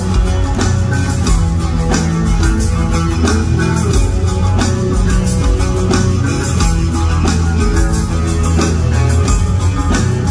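Rock band playing live through a large hall's PA, heard from the crowd: electric guitars and bass over a steady drum beat in an instrumental passage, with no singing.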